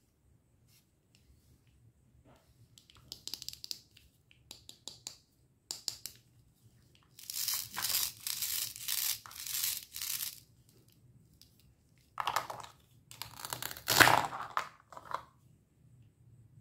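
Hook-and-loop fastener of a toy plastic bell pepper being pulled apart, a long rasping tear lasting about three seconds, after some light scratchy handling of the plastic. A second, shorter stretch of rasping follows, with a sharp knock, the loudest sound, near the end.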